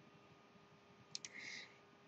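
Two quick computer-mouse button clicks, a double-click, a little over a second in, followed by a short faint rustle; otherwise near silence.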